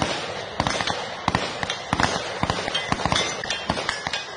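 Gunfire from an armed gang clash, played from a low-quality phone recording. Irregular sharp cracks come roughly two or three a second over a steady hiss.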